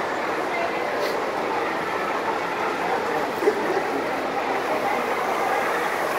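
Battery-powered toy train running along plastic track, over a steady din of background voices. A brief knock comes about three and a half seconds in.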